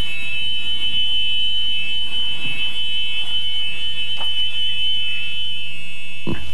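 Club Car electric golf cart's reverse warning buzzer sounding one steady, high-pitched tone, with a faint low hum beneath it. The buzzer sounds because the speed controller's capacitor is being discharged, with the key on and the accelerator pressed.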